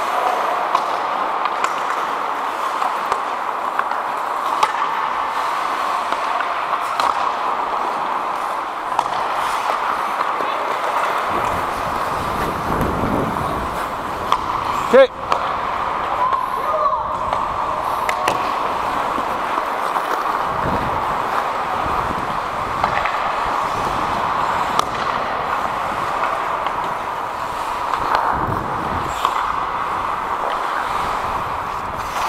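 Indoor ice hockey rink during play: skates scraping and sticks on the ice, with echoing distant calls from players. There is one sharp crack about halfway through. In the second half, low gusts of wind buffet the helmet camera's microphone.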